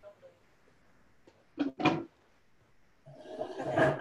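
Two quick, sharp knocks a little before the halfway point, then about a second of louder rustling and handling noise near the end.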